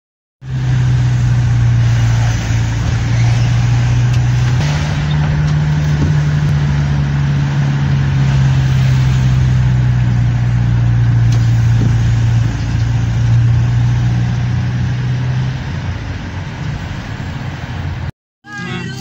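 A car driving, heard from inside the cabin: a steady low engine hum over road noise. The hum steps up in pitch about four seconds in and drops away a couple of seconds before the end.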